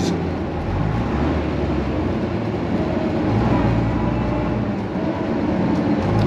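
Bristol VR double-decker bus on the move, its rear-mounted Gardner diesel engine running steadily with road and body noise, heard from inside the lower deck.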